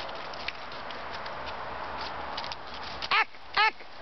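Faint scratching and light ticks of a German Shorthaired Pointer's claws on tree bark as it climbs, then, near the end, two short, sharp shouts falling in pitch from a woman scolding the dog for climbing too high.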